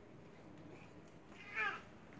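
A single brief, wavering, high-pitched squeal about one and a half seconds in, over quiet hall room tone.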